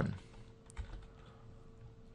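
A few faint keystrokes on a computer keyboard as parentheses are typed into a line of code, over a faint steady hum.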